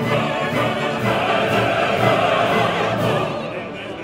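Operatic ensemble singing: solo voices and a full chorus with a symphony orchestra, easing off slightly near the end.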